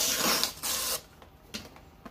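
Packaging handled at a counter: two short rasping bursts in the first second, like a wrapper being torn or pulled, then quiet.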